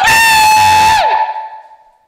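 A man's voice yelling 'shonbeen!' as one long, high-pitched, very loud held note that drops in pitch as it breaks off about a second in, followed by a short echo.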